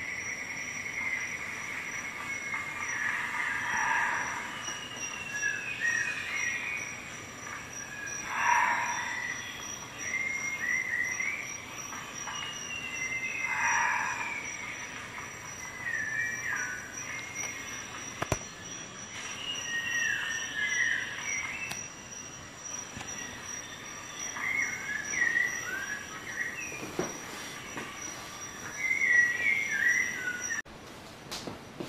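Birds chirping and twittering in many short calls that slide up and down in pitch, with a faint steady high whine underneath and a couple of sharp clicks in the second half.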